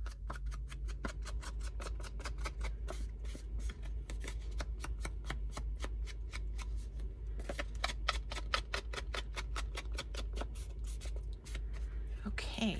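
Small round foam ink dauber brushed in quick strokes along the edges of a sheet of paper to ink them, several strokes a second, with a short pause about halfway through. A low steady hum lies underneath.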